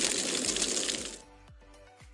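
Loud crackling hiss that cuts off about a second in, giving way to quiet background music with steady tones and a soft, regular low beat.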